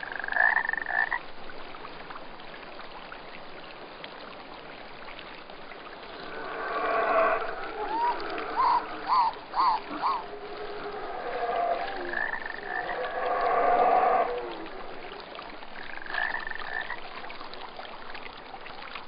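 Animal calls over a steady rush like running water: a short high call at the start, a cluster of calls in the middle that includes four quick rising chirps, longer calls a little later, and one more short high call near the end.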